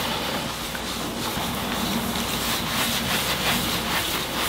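Microfiber towel rubbing beeswax paste into a concrete countertop in circles, a steady scrubbing hiss close to the microphone.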